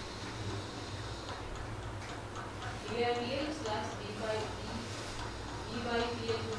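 A voice speaking faintly, with a steady low hum underneath.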